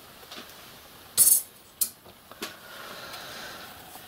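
Metal tools and parts handled on a steel workbench plate: a short metallic rattle about a second in, then two sharp clicks, as the scribing block is moved aside and the jig is set.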